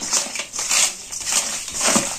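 Hands squeezing and turning raw fish pieces coated in turmeric and spices in a stainless steel bowl: a series of short, noisy mixing strokes, about two a second.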